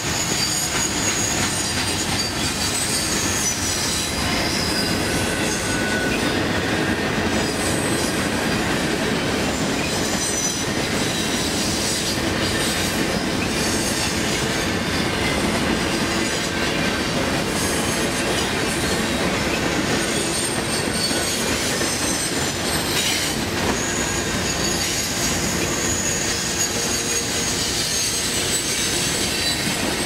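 A freight train of tank cars and covered hoppers rolls past at close range, a steady rumble and clatter of steel wheels on rail. Thin, high wheel squeals come and go over it.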